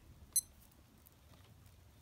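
A single short, high-pitched electronic beep from a Casio A1000D digital watch about a third of a second in, as a button is pressed in chronograph mode.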